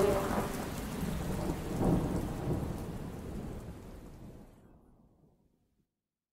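A noisy rumble and hiss without any tune, swelling briefly about two seconds in, then fading out to silence about four and a half seconds in.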